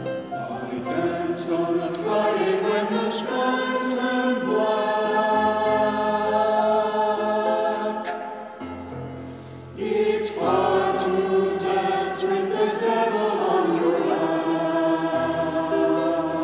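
Mixed choir singing slow, sustained chords. The sound thins and drops a little past the middle, then the voices come back in together.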